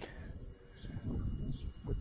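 Outdoor background in a pause in talk: an uneven low rumble with a few faint bird chirps in the middle.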